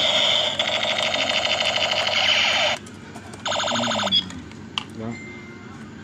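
Battery-powered light-up toy gun sounding its loud electronic alarm-like effect, a shrill rapidly pulsing tone, deafening up close, that cuts off suddenly about three seconds in; a second short burst follows about half a second later. It runs on freshly recharged AA batteries.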